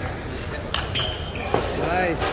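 Table tennis rally: the ball cracking sharply off the paddles and table, a few hits about half a second apart, the loudest about one and a half seconds in. Voices of a crowded hall murmur underneath, and a voice rises near the end.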